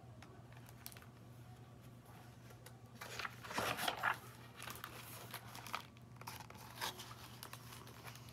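Paper pages of a picture book being turned by hand: a rustle, loudest about three to four seconds in, then a few smaller rustles as the page is smoothed down.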